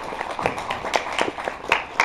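Audience applauding: many hands clapping at once, dense and irregular.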